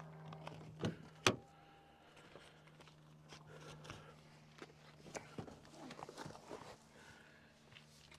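2023 Toyota Prius driver's door clicking open, two sharp clicks about a second in, followed by faint rustling and knocks as a person climbs into the driver's seat. A faint steady low hum runs underneath.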